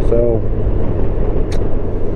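2019 Honda Gold Wing Tour's flat-six engine running steadily at cruising speed, under a constant low hum of wind and road noise. A short sharp click comes about a second and a half in.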